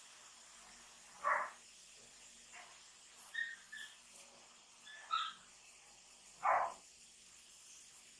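A dog barking faintly in the background: two short barks, about a second in and near the end, with a few faint, short high-pitched sounds between them.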